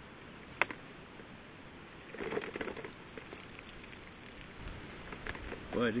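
Water pouring and dripping out of a bullet-holed plastic soda bottle onto the ground, with one sharp click about half a second in and a fuller splash of water about two seconds in.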